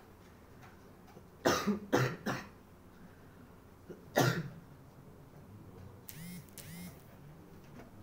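A person coughing: three coughs in quick succession, then a single cough about two seconds later.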